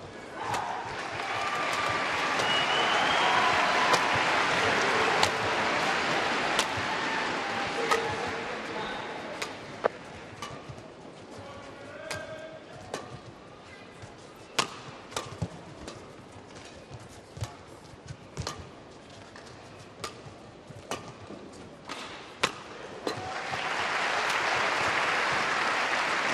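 Arena crowd cheering, fading to a quieter badminton rally of sharp racket-on-shuttlecock strikes about once a second. The crowd swells again into cheers and applause near the end as the rally ends on a mistake.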